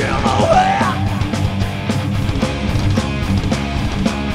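Metal band playing live: heavily distorted electric guitars over fast drumming, loud and dense.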